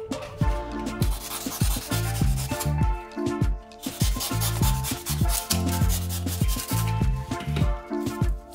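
Utility knife blade cutting and scraping through foam, a scratchy rubbing sound, over background music with a steady beat.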